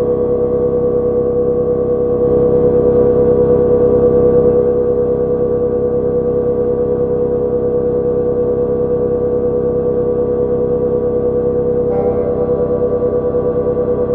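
Dungeon-synth music: sustained, bell-like synthesizer chords over a steady low pulse, moving to a new chord about twelve seconds in.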